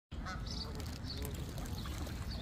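Canada goose giving several short calls in quick succession, over a steady low rumble.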